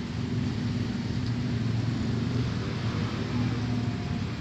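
Motor vehicle traffic: a steady low engine hum from cars and motorbikes running.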